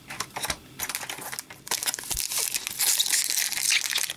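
Foil wrapper of a 2015-16 Upper Deck Series Two hockey card pack crinkling as it is handled, with scattered crackles at first and a dense, louder rustle in the second half.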